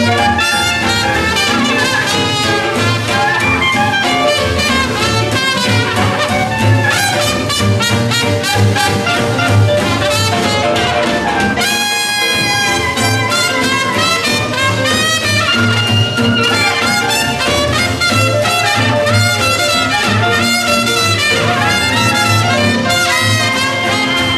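Traditional New Orleans-style jazz band playing: clarinet and trumpet leading over piano, guitar, bass and drums. There is a short break about halfway through, then a long held horn note.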